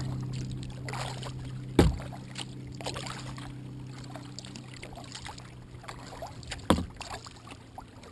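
Kayak on the water: light splashing and dripping of water around the hull, with two sharp knocks, one about two seconds in and one near the end. Under it a steady low hum slowly fades.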